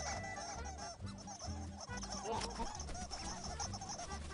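A flock of cartoon birds chattering and squawking in goofy honk-like gibberish, many small calls overlapping without pause, over a bouncy musical bassline.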